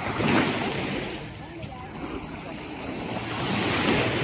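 Small sea waves washing and splashing close to the microphone, swelling louder about half a second in and again near the end, with wind rumbling on the microphone.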